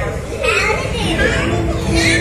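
Lively, indistinct voices, including children's, with rising and falling pitch, over background music and a steady low rumble. A sustained musical note comes in near the end.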